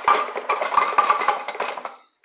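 Liquid sloshing and the plastic tank knocking as a pump-up garden sprayer is shaken to mix insecticide into the water; it stops near the end.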